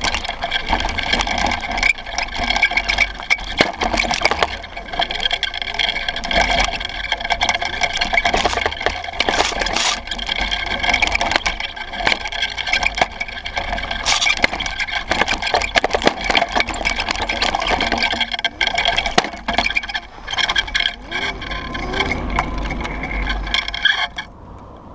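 Small off-road buggy driven over rough dirt: a steady whine from its drive over a low rumble, with constant rattling and sharp knocks from the chassis and wheels on the bumpy ground.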